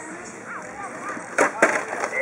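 Radio-controlled truck coming down a flight of stairs, with two loud hard knocks about a quarter of a second apart, about one and a half seconds in, as it strikes the steps and lands.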